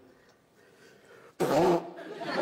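A man blowing his nose hard into a tissue: one loud, short blow about a second and a half in, with a brief pitched honk in it.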